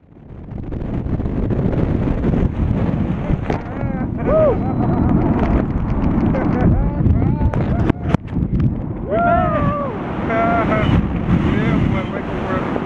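Freefall wind rushing and buffeting over the camera microphone during a tandem skydive, with a few short shouts from the skydivers and a sharp knock about eight seconds in.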